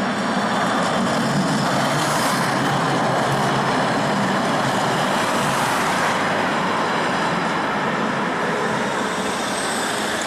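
Two-car Tatra T3 tram set running along street track, its wheels on the rails and its motors making a steady rumble, mixed with passing road traffic. The sound eases slightly near the end.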